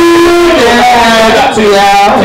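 An MC's voice through a loud club microphone and PA, stretched into long held notes that slide in pitch rather than spoken words, with music under it.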